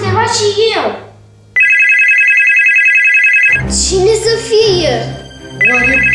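A telephone ringing: a steady electronic trill about two seconds long, then, after a short gap, the same ring again near the end.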